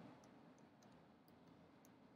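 Near silence with a few faint key clicks from a computer keyboard as code is typed.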